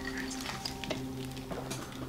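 Horror film trailer soundtrack: a quiet, sustained music chord held steady, with a few faint clicks.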